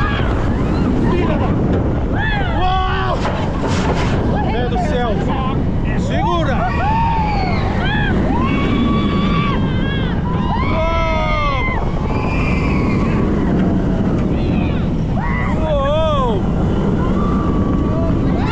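Heavy wind rush on the microphone of a moving roller coaster, steady and loud throughout. Over it, riders let out repeated screams and whoops that rise and fall in pitch.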